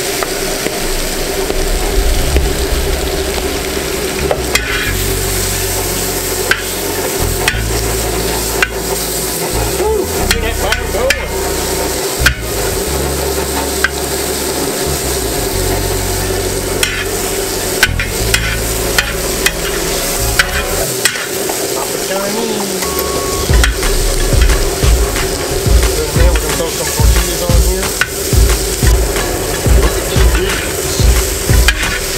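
Diced tilapia coated in blackening seasoning frying in hot butter on a steel discada, sizzling steadily, while a metal spatula scrapes and taps across the disc. Near the end the stirring turns into regular strokes about twice a second.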